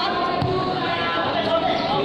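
A futsal ball kicked once, a single sharp thud about half a second in, over continuous chatter of voices.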